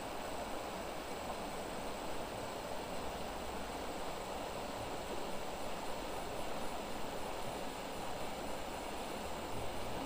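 Steady rush of a fast-flowing river running over rocks.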